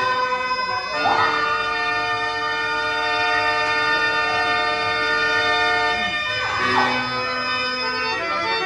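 Harmonium accompaniment holding one long, steady chord from about a second in to about six seconds, with busier melodic runs just before and after it.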